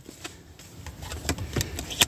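A few light clicks and taps spread through the pause, typical of tarot cards being handled and turned over, over a faint low hum.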